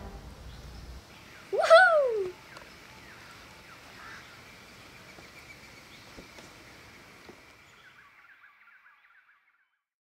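Quiet outdoor garden ambience with faint scattered bird chirps, broken about one and a half seconds in by a single short whoop from a child's voice that rises and then falls in pitch. The ambience fades out to silence near the end.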